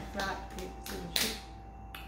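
A few soft taps of fists striking open palms as two players count out rock, paper, scissors, the loudest just past a second in.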